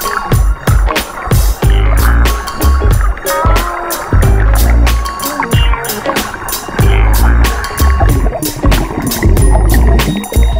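Background music with a steady drum beat and heavy bass.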